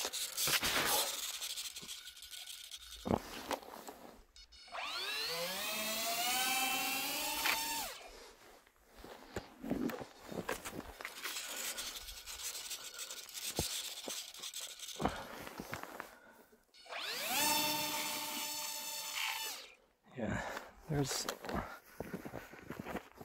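Twin electric motors of a small RC Twin Otter plane on snow skis throttling up twice. The first time, a whine rises steadily over a couple of seconds, levels off and cuts out. The second time it climbs quickly, holds high for about two seconds and then stops. Crunching and handling clicks come in between. The pilot puts the plane's sluggishness down to drag from snow gathering on the skis.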